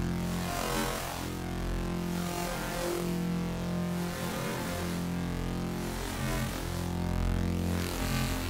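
Serum software synthesizer holding one low, buzzy sustained note. Its pitch stays steady while its upper tone keeps shifting as the custom wavetable is redrawn by hand in mirror mode.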